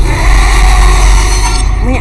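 Loud film-trailer sound effect: a deep rumble under a dense rushing noise, easing off near the end as a voice comes in.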